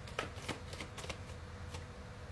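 A deck of tarot cards being shuffled by hand: a quick run of soft card flicks and rustles, several in two seconds.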